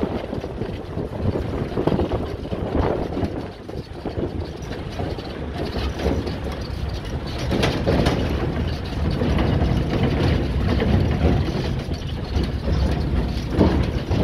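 Running noise of a moving vehicle heard from on board: a steady low rumble that grows louder about halfway through.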